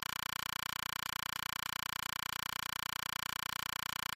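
A steady electronic buzz made of many stacked tones, pulsing fast and evenly.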